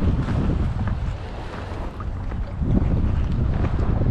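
Wind buffeting the microphone: a continuous, uneven low rumble.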